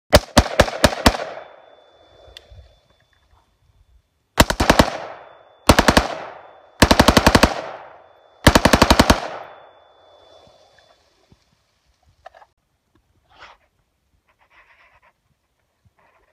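Full-auto M16 rifle chambered in 7.62x39 with a 10.5-inch barrel, firing five short bursts. Each burst trails off in echo, and the last two are the longest. A few faint clicks follow near the end.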